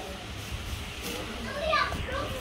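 Indistinct background voices with a brief high-pitched voice calling out near the end, over a low steady hum.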